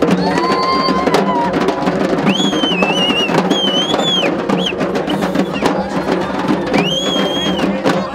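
A group of Armenian dhol drums beaten by hand in a fast, dense rhythm. A high melody rises and falls above the drumming in the first second and again from about two to four seconds in and near the end.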